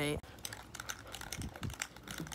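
Faint, irregular clicking and crinkling from hands handling a spray paint can as it is picked up, with a couple of soft bumps.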